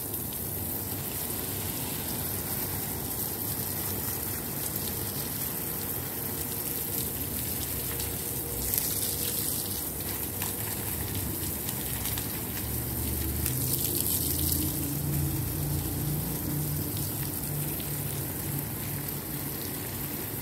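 Garden hose spraying water onto soil and the concrete wall of a planter: a steady splashing hiss.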